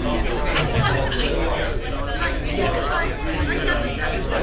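Many people chatting at once, a steady hubbub of overlapping voices with no single speaker standing out.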